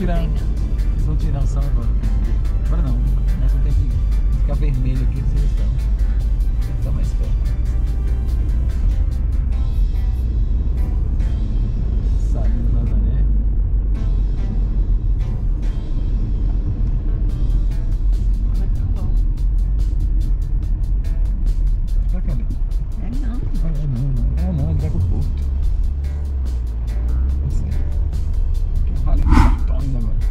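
A car being driven, with a steady low rumble of engine and road noise, under background music with a singing voice.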